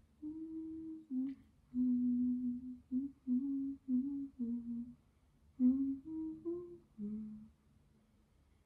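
A woman humming a slow tune with closed lips: held notes stepping up and down in short phrases, with a brief break about five seconds in, trailing off shortly before the end.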